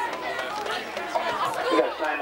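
Several people talking at once, overlapping chatter with no one voice standing out.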